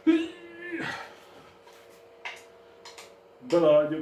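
A man's voice: a short held vocal sound right at the start, a few faint clicks in the middle, then loud speech near the end.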